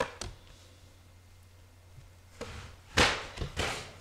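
Tarot cards being dealt onto a cloth-covered table: a light tap at the start, then a louder rustle and slap as a card is slid off the deck and laid down about three seconds in.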